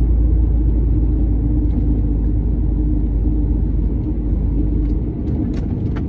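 A lorry driving steadily along a road, heard from inside the cab: a constant deep rumble of engine and road noise.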